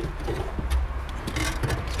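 Light clicks and knocks as a fuel pump and hanger assembly is handled and turned in the fuel tank opening, over a low steady rumble.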